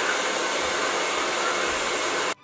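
Bio Ionic hair dryer blowing steadily at close range, an even rush of air noise.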